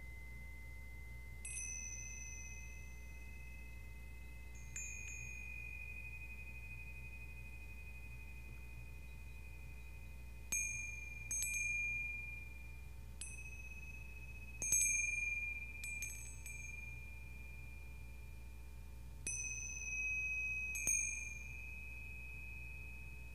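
Small hand-held metal chimes struck about ten times, one by one. Each gives a high, bright ringing tone that dies away over a second or more, and some strikes come in quick pairs.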